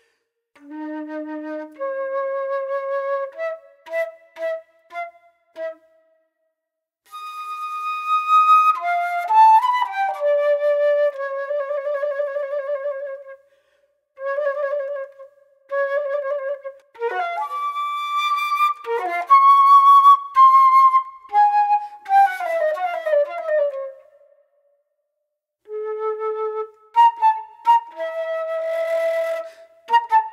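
Solo concert flute playing an unaccompanied piece in separate phrases with brief pauses between them. Held notes have a clear vibrato, and a quick falling run comes about two-thirds of the way through.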